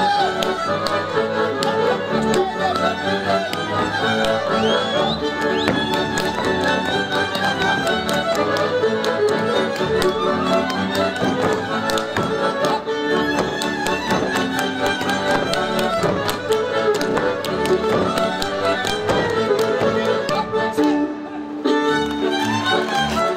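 Live Hungarian Kalotaszeg folk band playing dance music: violins lead over accordion and double bass. Sharp boot slaps and heel stamps from the solo male dancers cut through repeatedly.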